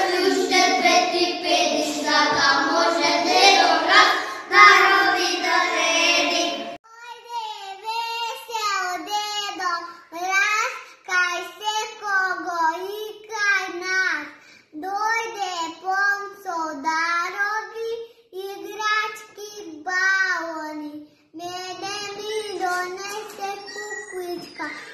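A small group of young children singing together, then from about seven seconds in a single young girl singing alone, unaccompanied.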